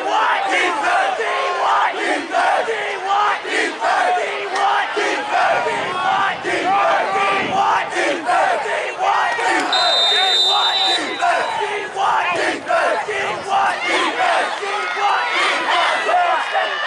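Many voices of football players and spectators shouting and yelling at once, loud and continuous, with no single speaker standing out. A brief steady high tone sounds for about a second, about ten seconds in.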